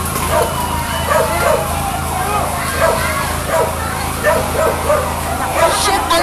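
A dog barking repeatedly over the voices of a crowd, with a steady low hum underneath.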